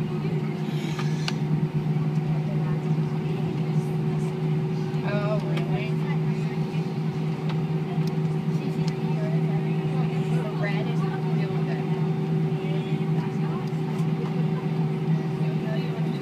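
Steady drone inside an Airbus A320 cabin as it taxis after landing with the engines at idle: an even hum carrying a constant low tone. Faint passenger voices come and go.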